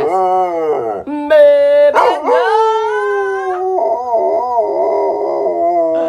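Dog howling with its muzzle raised, long drawn-out howls whose pitch slides up and down, with a short break about a second in. The dog was trained to howl on cue as its way of 'singing'.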